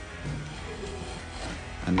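Background music, with the faint scrape of a freshly sharpened chisel paring a thin curled shaving off the edge of a wooden board by hand pressure alone.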